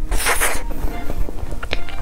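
Close-miked bite into a soft, powdered pastry with a molten chocolate filling: a short noisy tear-and-suck in the first half second, then several sharp wet clicks of chewing and lip smacks. Faint background music underneath.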